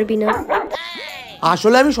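Dog-like yelping and a whimper over background music with a singing voice, with one short rising-and-falling whine about halfway through.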